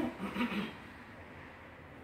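A brief trailing bit of a man's voice, then quiet room tone with no distinct sound.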